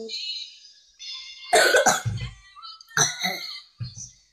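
Harsh coughing from someone with a cold: two coughs, the first about a second and a half in and the second about a second later.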